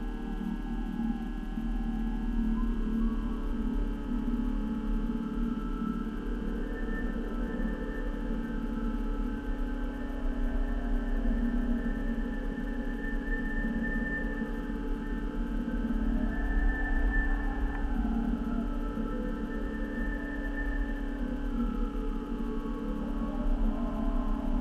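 Steady electrical hum and whine from the balloon payload's onboard electronics, picked up by the camera's microphone. Over the hum, thin tones slowly rise and fall in waves every few seconds.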